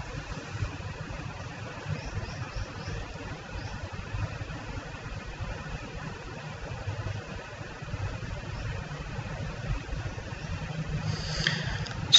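Steady low background rumble with faint hiss and no speech.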